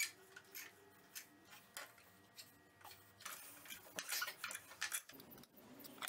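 Faint, irregular light clicks and taps of metal pieces and clamps being handled on a workbench, with a closer run of them near the end.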